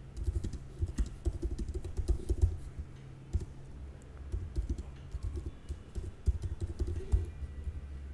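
Typing on a computer keyboard: irregular runs of quick keystrokes with short pauses, stopping shortly before the end.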